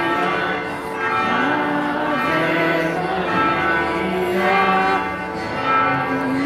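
A Marian hymn sung to a slow melody in long held notes that step and glide from one pitch to the next.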